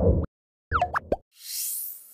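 Animated end-card sound effects: a short low boom, then a few quick pitched blips, some sliding in pitch, then a high sparkling whoosh that fades out.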